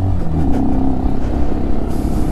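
Italika DM250X motorcycle's single-cylinder engine running steadily as it is ridden slowly along a dirt off-road track, heard from on board the bike.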